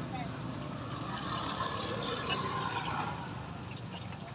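Street market background noise: distant voices over a steady low hum, with a rushing swell that builds through the middle and fades near the end.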